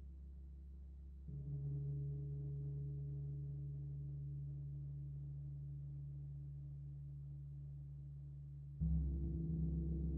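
Hanging bronze gongs struck twice, softly about a second in and more loudly near the end. Each stroke rings on as a low, steady, slowly fading hum with several tones layered together.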